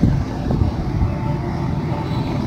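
Steady low rumble of city street traffic heard from above, with a faint thin tone running through it.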